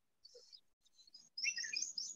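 Birds chirping faintly in the background, with a run of quick, high-pitched chirps starting about one and a half seconds in.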